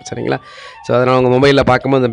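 A man's voice: a breath, then one long drawn-out syllable about a second in, running into more talk.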